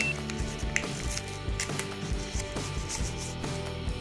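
Paper rustling and crinkling as a homemade paper surprise egg is opened by hand and a paper dragon cutout is handled, with scattered short crackles over quiet background music.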